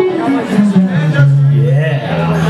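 Keyboard playing held notes that step down in pitch, over talking and chatter from a club crowd.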